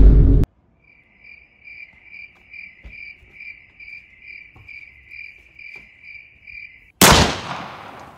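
Cricket chirping edited in as the comic 'crickets' sound of an awkward silence: a steady high chirp about two and a half times a second for some six seconds. A loud noisy burst cuts off just after the start. Another loud burst comes about seven seconds in and fades over a second.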